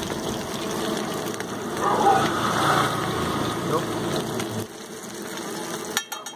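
Busy street-stall ambience: people talking, over a low engine-like rumble that drops away about two-thirds of the way through. Under it is the sizzle of diced potatoes and a burger bun frying in oil on a flat iron griddle.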